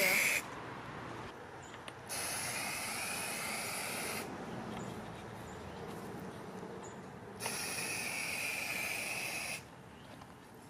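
Aerosol can of Rust-Oleum inverted marking paint spraying onto grass: a brief spurt right at the start, then two long, even hisses of about two seconds each, the second with a thin whistle in it.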